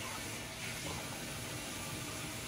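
Steady low background hiss of room tone, with no distinct sound standing out.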